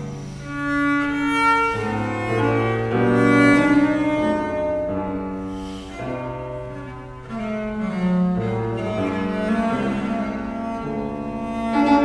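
Viola da gamba playing a bowed melody in a steady succession of held notes, accompanied by a fortepiano.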